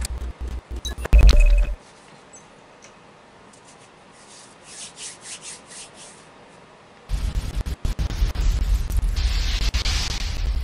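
Rubbing and scraping from hands handling over-ear headphones close to the microphone, in a few loud bursts over the first two seconds. From about seven seconds in, a low rumbling noise with crackles.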